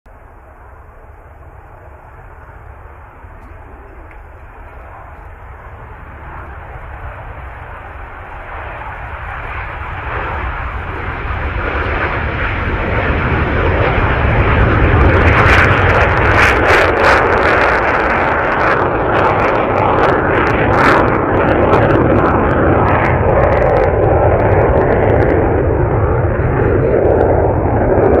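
A MiG-29 fighter's twin RD-33 turbofan engines at takeoff power, growing steadily louder over the first half as the jet approaches. It then stays loud, with a deep rumble and a spell of sharp crackling from a little past halfway, as it passes and climbs away.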